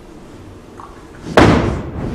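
A single loud, sharp impact about one and a half seconds in, ringing out in a large hall. Before it there is only faint background sound.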